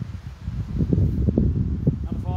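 Wind buffeting the microphone: a low, gusty rumble that swells about a second in.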